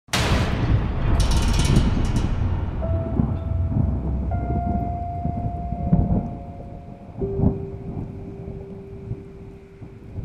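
Thunderclap bursting in suddenly and rumbling away as it slowly fades, with held musical notes coming in about three seconds in and a lower one about seven seconds in.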